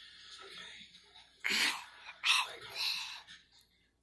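A young child's whispered, breathy vocal sounds: a few short hissy bursts of breath in the second half, with no clear words.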